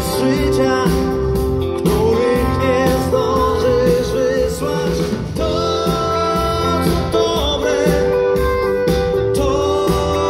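Live pop song played by a band with keyboard and electric bass under a male lead vocal, recorded from the audience in a concert hall.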